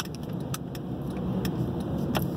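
Steady road and engine rumble inside a moving car's cabin, with a few light clicks.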